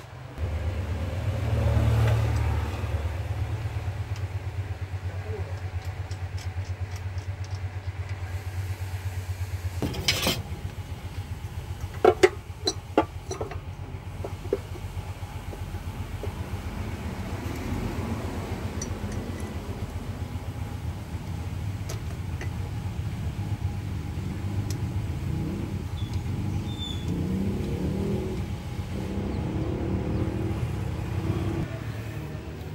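Suzuki Carry's four-cylinder engine running with its new timing belt fitted. It swells briefly about two seconds in, then idles steadily. A few sharp metallic knocks come about ten and twelve seconds in.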